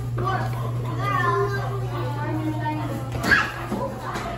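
Children chattering and calling out in a room, several voices overlapping, with one brief louder cry a little after three seconds. A steady low hum runs underneath.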